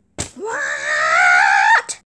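A short, sharp click, then a high-pitched screaming voice that rises quickly and holds for about a second and a half before breaking off, followed by another click near the end.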